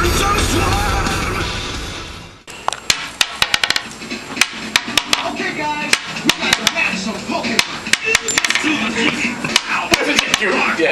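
Loud music fades out over the first two seconds and cuts off. Then comes a run of sharp, uneven clicks and knocks: small metal balls tossed onto a wooden tabletop and against a row of small metal cups.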